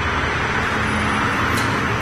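Steady road traffic noise, an even rushing sound.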